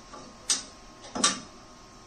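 Two sharp metal-on-metal knocks about three-quarters of a second apart, the second louder, as a steel tube is handled and fitted against a fabricated rear truss.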